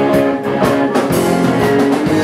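Live rock band playing: electric guitar over a drum kit, with a steady beat of about two hits a second.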